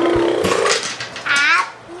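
A young child's wordless vocal sounds: a held low "ahh" in the first half-second, then a short, higher squeal about a second and a half in.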